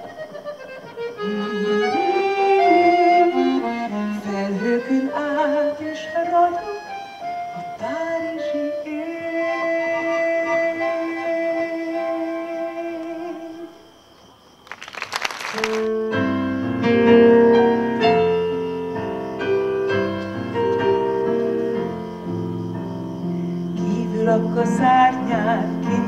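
Accordion playing a slow solo melody that ends about fourteen seconds in. After a brief lull and a short burst of noise, a digital piano starts playing sustained chords with a bass line.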